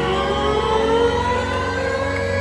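Live synthesizer played on stage: a chord of several notes gliding slowly upward in pitch together, over steady low sustained notes.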